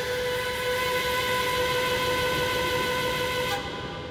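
Jet airliner engines running with a steady whine of several high tones over a rushing hiss. The rush drops away sharply near the end and the sound starts to fade.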